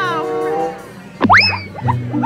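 Playful background music with a cartoon boing sound effect about a second in: a quick whistle-like glide that swoops up in pitch and falls back down.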